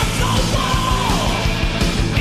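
1980s heavy metal music with dense, rapid drums and bass under distorted rock sound. A high held note wavers and then slides downward.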